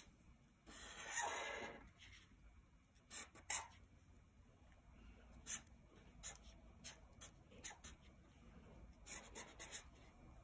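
Black felt-tip marker drawing on paper, faint: one longer stroke about a second in, then a run of short quick strokes.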